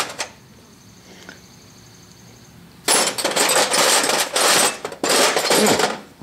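Loose steel hand tools clattering and scraping against one another in a metal toolbox as hands dig through them, starting about halfway in, with a short break near the end.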